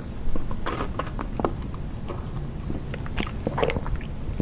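Close-miked biting and chewing of gummy jelly candy: a scatter of short, irregular mouth sounds.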